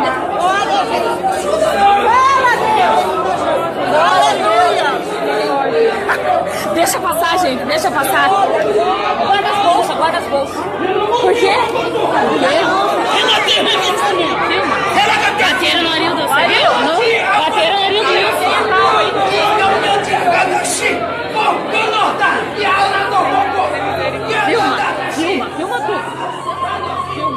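Many people in a church congregation shouting and talking over one another at once, echoing in a large hall: the uproar of a scuffle breaking out among the crowd.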